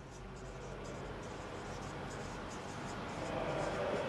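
Felt-tip marker writing on a whiteboard: a run of short, irregular squeaky strokes as a word is written out.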